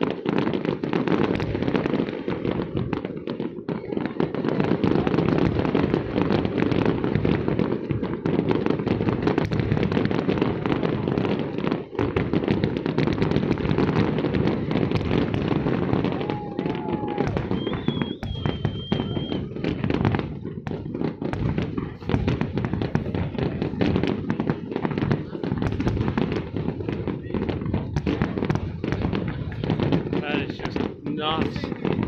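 Aerial fireworks display: a dense, continuous barrage of shell bursts and crackling, many bangs a second over a low rolling rumble. A brief high whistle sounds just past halfway.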